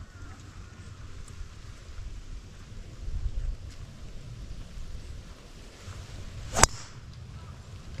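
A golf driver striking a ball off the tee: a single sharp crack about six and a half seconds in, with a brief swish of the swing just before it.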